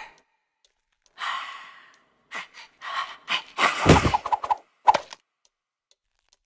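Cartoon sound effects: a breathy exhale from an animated skeleton, then a run of knocks building to a heavy thud about four seconds in and a quick rattle of bones as the skeleton falls apart on the floor.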